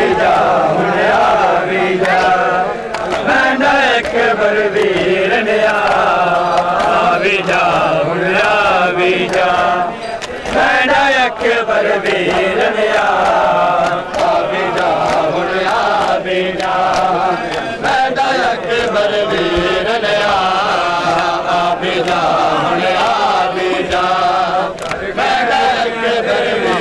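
Male voices chanting a Punjabi noha, a mourning lament, in a continuous sung recitation, with short breaks between lines about ten and fourteen seconds in.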